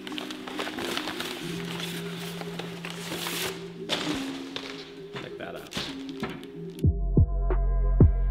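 Brown paper wrapping rustling and crinkling as it is pulled off a part, over background music with held low notes. Near the end the music changes to a beat with deep bass hits that drop in pitch.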